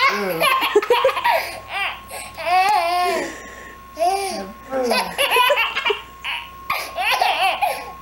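An infant laughing in repeated bursts, with an adult laughing along at a lower pitch. A faint steady high tone runs underneath.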